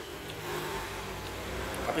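A vehicle engine going by on the road: a low hum that swells slightly after about half a second and holds.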